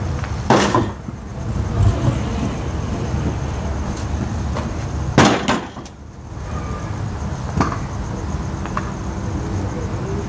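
Pro scooter clattering on concrete during tricks, with a loud sharp impact about half a second in and another about five seconds in, then a smaller knock near eight seconds, over a steady low rumble.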